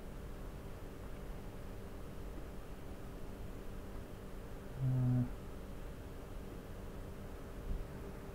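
Quiet room tone with a steady low hum, broken about five seconds in by one short, flat hummed "mm" from a voice.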